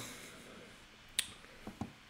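Quiet room tone, with a single sharp click about halfway through and two fainter clicks shortly after.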